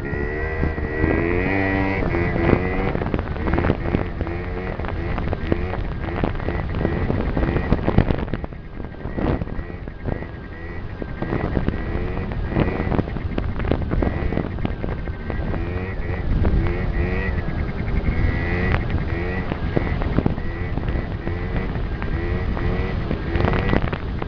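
Yamaha BWS scooter engine running while riding, its pitch rising and falling with the throttle, with a brief drop in level about eight seconds in. Wind buffets the helmet-mounted microphone.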